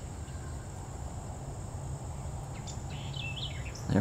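Outdoor garden ambience: a steady high-pitched insect drone, with a few short bird chirps about three seconds in, over a low rumble.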